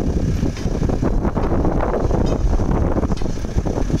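Steady street noise of passing traffic, with wind buffeting the microphone.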